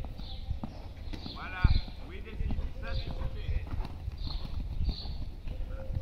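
Horse hoofbeats on arena sand: irregular dull thuds, with one louder thump about a second and a half in.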